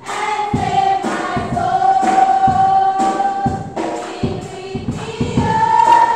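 A group of children and young people singing a song together, held notes over a steady low beat.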